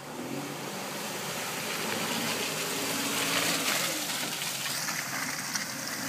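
A Jeep Wrangler Unlimited Rubicon's 4.0-litre inline-six engine running under load as it climbs out of a muddy water crossing, with water sloshing around the tyres. It grows louder as it comes close, loudest about three and a half seconds in.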